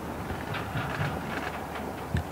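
Steady low outdoor background rumble, with faint distant voices.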